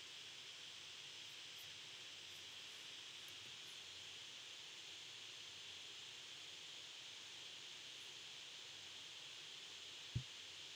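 Near silence: steady, faint microphone hiss of room tone.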